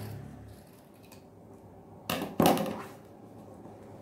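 Scissors cutting fabric on a cutting mat, with two sharp clacks close together about two seconds in.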